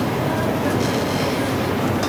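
Steady rumbling background noise filling the room, with faint traces of a voice.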